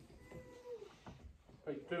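A small child's faint, thin vocal sound: one held note that drops away at the end, followed near the end by a louder voice starting up.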